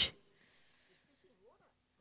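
Near silence: room tone, after a woman's voice cuts off at the very start, with a faint brief sound near the end.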